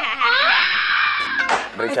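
High-pitched, wavering squeal of laughter from a person, breaking off suddenly about a second and a half in.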